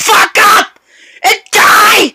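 A person yelling and wailing at full loudness in short bursts without clear words: two close together at the start, a short one just past a second in, and a longer one at the end.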